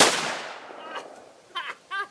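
A single 12-gauge shotgun shot: a sharp, loud report right at the start that rings out and dies away over about a second.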